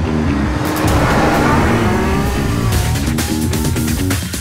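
Ferrari FF's 6.3-litre V12 engine accelerating, rising and falling in pitch, heard over background music.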